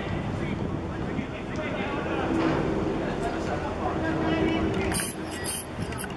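Voices calling and shouting during a football match in open play, with a harsh crackly burst of noise about five seconds in.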